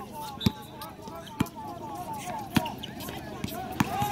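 Basketball bouncing on an outdoor hard court, four separate bounces about a second apart, over voices in the background.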